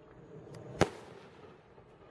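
Consumer firework reload shell: one sharp, loud report about a second in, then a low fading rumble.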